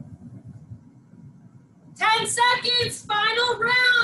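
A high-pitched voice singing in two short loud phrases, starting about halfway in; before it, only a faint low rumble.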